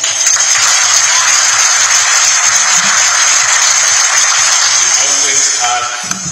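Congregation applauding, a dense, loud rush of clapping that fades out near the end, over background music.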